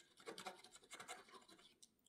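A coin scratching the coating off a scratch-off lottery ticket: faint, quick scraping strokes, one after another, through most of the two seconds.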